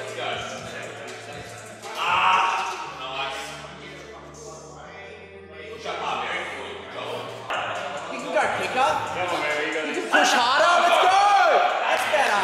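Busy gym background noise: music with a steady bass line under voices talking and calling out. The voices grow loudest near the end.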